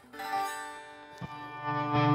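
Electric guitar, lightly overdriven through an amp simulator, strums a chord that rings out and decays. It is struck again a little over a second in, with low notes building after.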